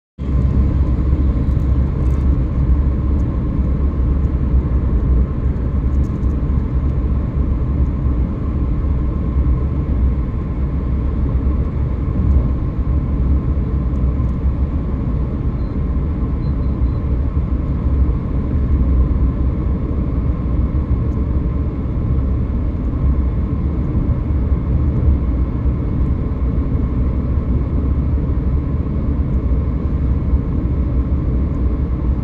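Steady low rumble of a car driving at highway speed, heard from inside the cabin: road and engine noise.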